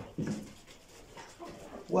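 Domestic hens clucking while they feed, with one short call about a quarter second in and a few quieter clucks later.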